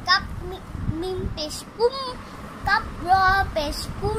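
A child's voice reading Arabic letter-and-vowel syllables aloud in a sing-song chant, one short syllable after another.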